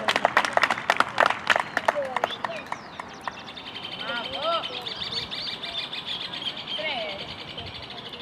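Spectators and players shouting and clapping as a goal is scored. From about three seconds in, a steady high-pitched rapid trill runs under scattered shouts.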